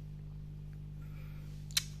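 Steady low mains hum from a FLECO F-232BT amplifier upgraded with an NForce 200 driver board, a slight residual hum that remains after the upgrade. A single short click comes near the end.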